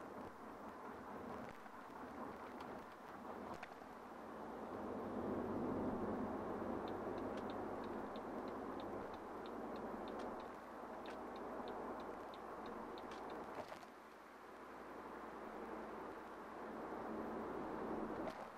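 Road and tyre noise heard inside the cabin of a BMW 520d F10 saloon cruising at road speed, swelling a few seconds in. A faint, even ticking, about three ticks a second, runs for some six seconds in the middle.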